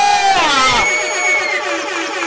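A man's long, held shout into a microphone over the PA, falling steeply in pitch about half a second in. It runs into a DJ's electronic sound effect of sliding, then steady held tones.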